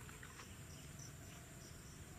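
Faint insect chirping: short high chirps repeated about three times a second over a low background hum.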